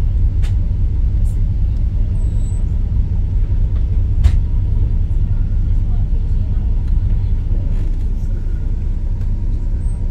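Boat engine running with a steady low rumble, with a couple of faint clicks over it.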